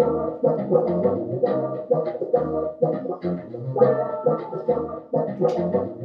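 Looped electric bassoon groove through overdrive: key clicks on the instrument used as percussion in a steady rhythm, with distorted sustained bassoon tones layered over them and a deep thump about every two and a half seconds.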